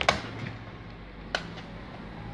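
Two sharp clicks about a second and a quarter apart, with a steady low hum underneath.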